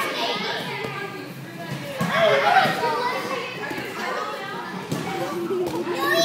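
Children's voices shouting and chattering during play, mixed with adult voices, with no clear words.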